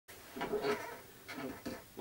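A long-haired white cat meowing: two or three short calls, the first and longest about half a second in.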